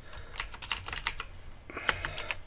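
Computer keyboard typing: a quick run of separate keystrokes, about four a second, the loudest near the end.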